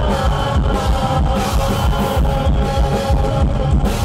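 Live metal band playing an instrumental passage: drums keep a steady beat under guitars holding long notes.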